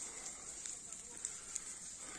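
Faint crackling of a ground fire burning through grass and leaf litter, with scattered small snaps.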